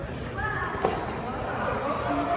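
Several voices talking in the background in a large echoing gym hall, with one short thump a little under a second in.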